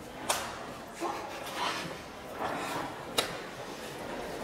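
Two sharp snaps, about three seconds apart, from a stretched rubber band being released. Boys' voices murmur between them.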